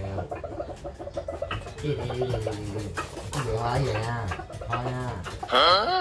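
Rooster making a series of low calls, with a louder, higher call near the end.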